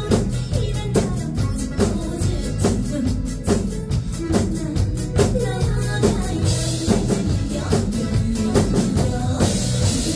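Two acoustic drum kits played together in a steady upbeat rhythm of kick, snare and tom strikes over a backing track of pop music. Crash cymbal washes come in about six and a half seconds in and again near the end.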